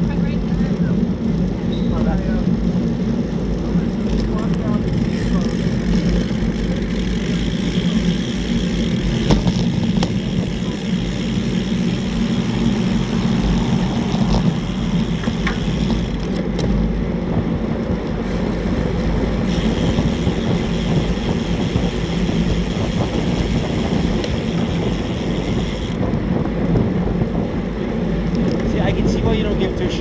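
Steady wind rush over a bicycle-mounted camera's microphone while riding a road bike at speed, with low road and tyre rumble underneath.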